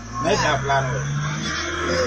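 A motor vehicle's engine running with a low steady hum whose pitch creeps up over about two seconds, with voices over it in the first second.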